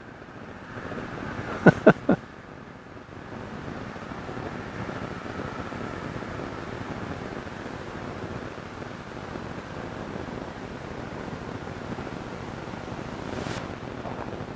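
Steady, even rush of wind on the microphone outdoors.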